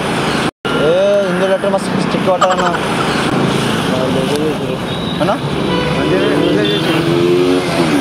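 Busy street traffic, cars and motorbikes running, under men's voices talking. The whole sound cuts out for an instant about half a second in.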